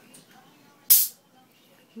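A short, sharp hiss of carbonation gas escaping from a SodaStream bottle of freshly carbonated soda, about a second in, as the bottle is opened.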